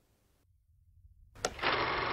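Near silence for over a second, then a sharp click and a dense, steady noise that sets in and carries on, like a soundtrack or sound effect under archival film.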